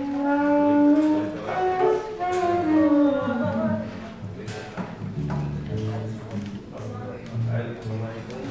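Live band music: a held note opens a short melodic phrase that falls step by step over about four seconds, then lower notes follow with a few light taps.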